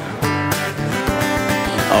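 Acoustic guitar strummed during a short instrumental gap between sung lines of a live acoustic folk song.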